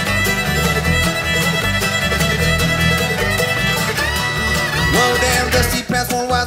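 Bluegrass string band playing an instrumental intro. The fiddle leads with long held notes, sliding up into a new note about four seconds in. Under it run banjo, mandolin and acoustic guitar picking over an upright bass.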